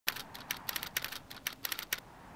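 Keyboard typing sound effect: a quick, uneven run of key clicks, about ten a second.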